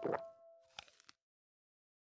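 A short cartoon sound effect, a plop-like hit, over the last fading notes of a children's song, followed by a few faint clicks just before a second in. The sound then cuts off into silence.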